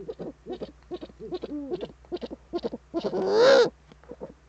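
Eurasian eagle-owl calling: a quick run of short calls at about four a second, with one long, loud, harsh call that wavers up and down in pitch about three seconds in.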